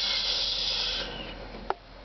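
A steady "shhh" hiss made by mouth as a sound effect for a toy paratrooper's parachute drop, fading after about a second. A single light click follows near the end.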